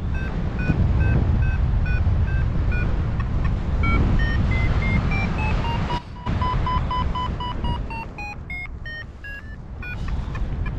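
A paragliding variometer beeping in a climb: short pitched beeps a few times a second, stepping in pitch and coming faster in the second half, over a steady rush of wind on the microphone. The beeps signal that the wing is climbing in a thermal.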